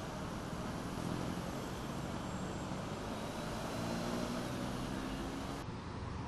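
Road traffic noise: a steady hiss of vehicles on a busy road, with the hum of a passing engine rising and falling in the middle. It ends abruptly shortly before the end.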